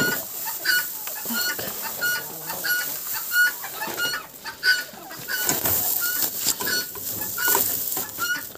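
Domestic fowl in the yard calling a short, high note over and over, about twice a second. Under the calls, dry hay rustles as it is handled and carried.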